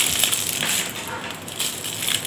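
Disposable plastic piping bag filled with butter icing rustling and crinkling as it is handled, a run of small irregular crackles.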